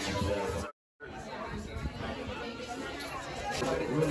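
Indistinct chatter of several people talking at once in a room. The sound cuts out completely for a moment just under a second in, then the chatter resumes.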